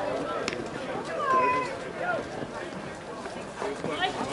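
Indistinct voices calling out across an open ball field, including one drawn-out call that bends in pitch about a second in. A single sharp click sounds about half a second in.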